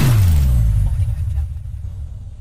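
Tail of an electronic intro sound effect: a deep bass tone gliding downward, then a low rumble that fades away.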